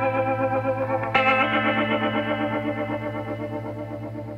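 Background music: held chords with a wavering shimmer, a new chord struck about a second in that slowly fades.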